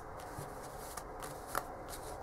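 Tarot cards being handled on a cloth-covered table: soft sliding and light taps of the cards, with one sharper tap about one and a half seconds in.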